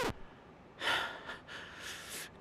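A person's breathy gasp about a second in, followed by fainter breaths.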